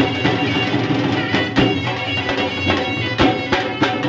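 Dhamal music played live on dhol drums, a driving beat of repeated strikes, with a wind instrument holding a sustained melody over it.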